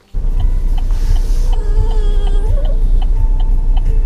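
Steady low rumble of a car heard from inside the cabin, starting abruptly just after the start.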